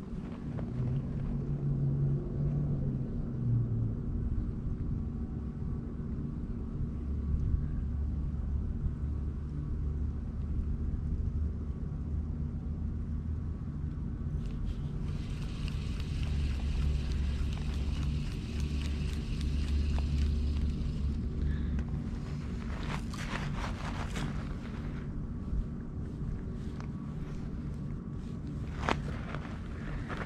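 Spinning reel being cranked to retrieve line, a soft whirring for several seconds in the middle, followed by a few sharp clicks. Under it runs a steady low rumble with a faint hum.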